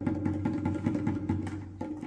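Two-headed barrel hand drum of the dholak type struck with the hands in quick strokes, several a second, each with a short low ring.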